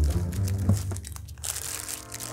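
Clear plastic wrapping crinkling as it is handled and pulled around a boxed camera body. The crackling grows denser near the end.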